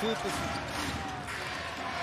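Basketball arena ambience: a crowd murmuring in the hall and a basketball bouncing on the hardwood court.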